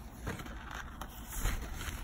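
Soft handling noise: rustling and a few light bumps as the camera is moved close over cloth.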